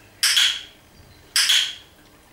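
Two sharp, short, ringing clinks, one near the start and one just past the middle, part of a steady series about a second apart.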